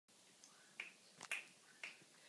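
Three or four faint finger snaps, about two a second, counting in the tempo before an a cappella song begins.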